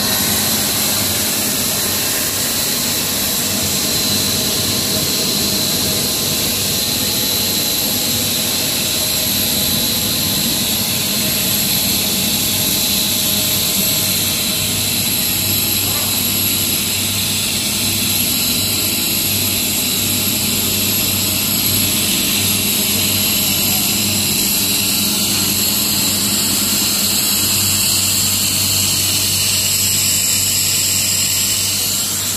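PE/HDPE pipe extrusion line running: a steady, loud machine noise from the extruder and its barrel heater fans, with high, even whining tones over a low hum.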